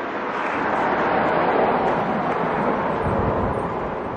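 A passing vehicle: a rushing noise that swells to a peak about halfway through, then fades.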